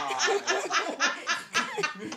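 People laughing hard, in quick repeated bursts of laughter.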